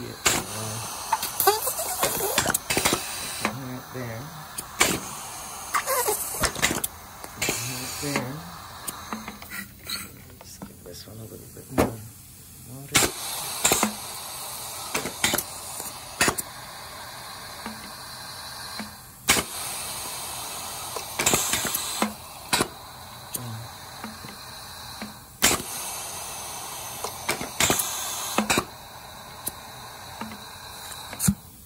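Four air-driven Hibar piston filling machines with rotary valves cycling together with no product in them: sharp clacks of the pistons and valves, with bursts of air hissing every few seconds.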